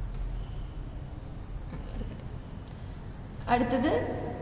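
Steady high-pitched background drone over a low rumble, with a brief voice-like sound rising near the end.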